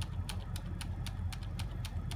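Computer keyboard key tapped over and over, about six sharp clicks a second, scrolling through a G-code file, under a low steady hum.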